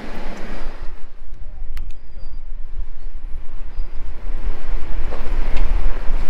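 Low rumble of a 2022 Ford Ranger pickup crawling down a rough, rocky four-wheel-drive track, heard from inside the cab. It grows louder about four seconds in, and there is one sharp click just before two seconds.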